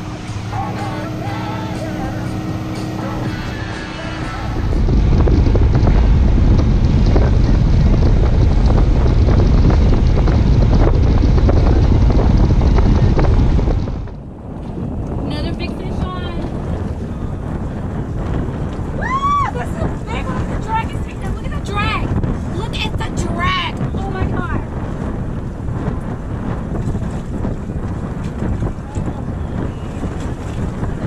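Guitar music fades out after about four seconds into a loud rush of wind on the microphone from a boat running across open water, which cuts off suddenly about fourteen seconds in. Then there is steadier, quieter wind on the microphone with a few short gliding chirps in the middle.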